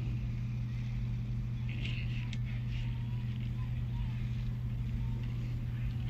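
Steady low hum under a pause in the commentary, with faint voices about two seconds in.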